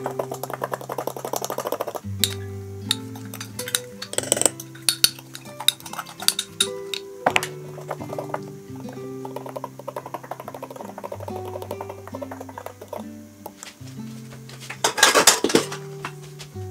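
Background music with a steady bass line, over repeated clinking of a utensil against a glass measuring cup as gelatin is stirred into hot water. Near the end comes a louder clatter of dishes as a bowl is taken from a cupboard.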